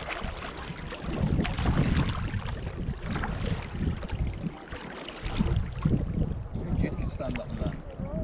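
Kayak being paddled: paddle blades dipping and splashing and water lapping at the hull, under an uneven low rumble of wind on the microphone.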